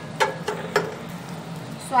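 Flat steel spatula scraping and tapping against a cast-iron tawa while stirring a thick chaat mixture, two sharp strokes in the first second, then quieter.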